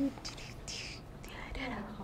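Soft whispered speech, breathy and hissy at first, turning into quiet low talk in the second half.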